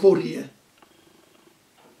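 A man's voice speaking in Lingala, breaking off about half a second in, followed by a faint low hum lasting about a second.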